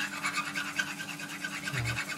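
Hand hone rubbed quickly back and forth over a turning scraper's edge, a rapid even scratchy rasping, to take off the old burr.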